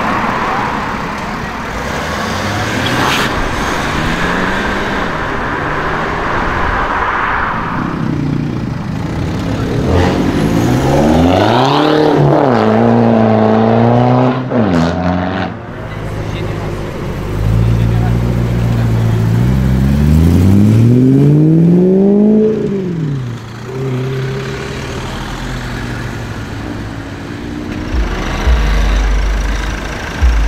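BMW E92 coupe engines revving and accelerating away, with two strong rev sweeps that climb and fall in pitch, one about a third of the way in and one about two-thirds in, and lighter engine noise between them.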